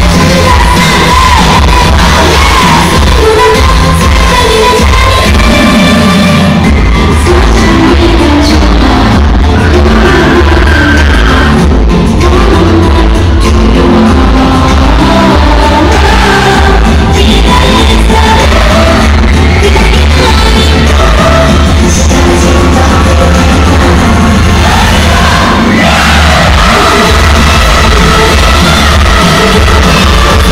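Live K-pop concert music played loud through a hall's sound system, with the girl group singing over a steady beat, recorded from the audience.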